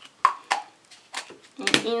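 A few short, sharp knocks and taps of objects being handled on a work table, one with a brief ring, then a woman's voice starts speaking near the end.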